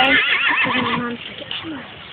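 A horse whinnying: one loud, high, quavering call that fades out about a second in.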